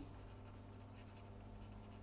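Faint sound of a marker pen writing a word on paper, over a low steady hum.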